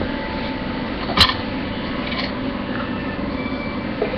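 Steady hiss of room noise picked up by a low-quality webcam microphone, with one short, sharp click about a second in.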